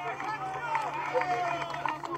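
Crowd of protesters talking at once, several voices overlapping, over a steady low hum.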